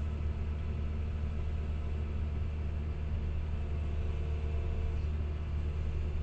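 Komatsu PC200 excavator's diesel engine running steadily, heard from inside the cab as a low hum, with a faint thin higher tone for about a second and a half in the middle.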